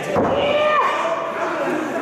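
A thud, then a long, drawn-out yell from one voice whose pitch bends up and down.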